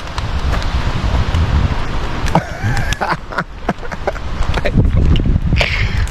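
Wind buffeting an outdoor microphone, with scattered sharp ticks of falling wet snow striking it.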